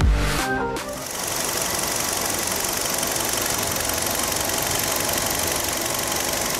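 Kia Rio's four-cylinder petrol engine idling steadily with the hood open. It takes over after background music stops about a second in.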